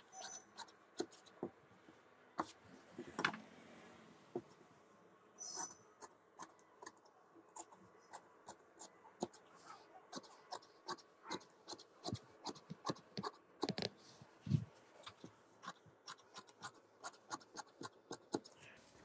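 Large tailor's shears snipping through shirt fabric along chalk lines: a run of faint, sharp clicks, one or two a second at first and coming quicker in the second half.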